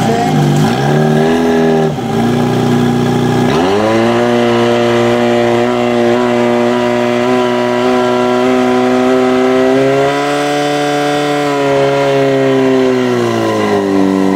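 Portable fire pump engine running hard under load. It is uneven and lower for the first few seconds, then rises sharply in pitch and holds a steady high note, lifts a little around ten seconds in, and drops back near the end.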